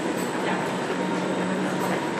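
Steady rushing background noise with a constant low hum under it, like a machine running.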